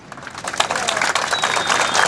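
A crowd applauding, the clapping starting faint and quickly swelling to a steady dense patter.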